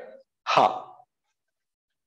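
Speech only: a man's voice finishing a phrase, then a single short 'haan' ('yes') about half a second in.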